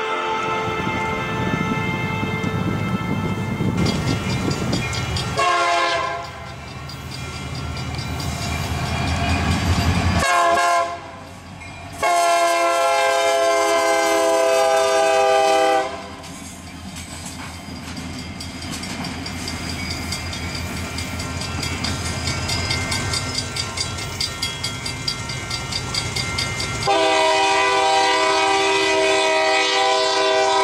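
Union Pacific diesel locomotives running light past a grade crossing. They sound their air horn in a series of blasts, two short ones and then two long ones, over the rumble of the engines and the clatter of the wheels on the rails. The rumble swells as the locomotives pass.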